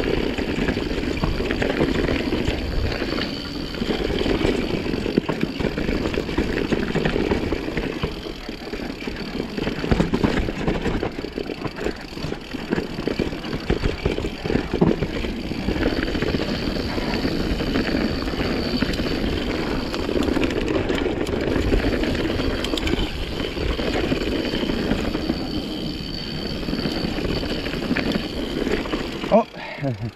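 Mountain bike rolling down a dirt forest singletrack: steady noise of the tyres on the trail and the bike rattling, with small knocks over roots and rocks.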